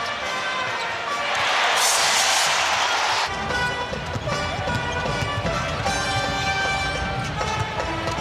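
Basketball game sound from the arena: a rush of crowd noise about a second and a half in, then a ball bouncing on the hardwood under arena music.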